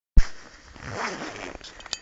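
Handling noise from a handheld camera: a sharp click just after the start, then rustling and scraping, with two more small clicks near the end.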